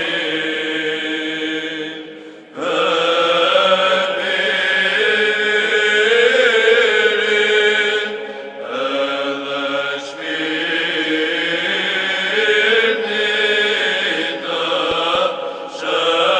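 Orthodox church chant, sung in long held phrases with brief pauses between them.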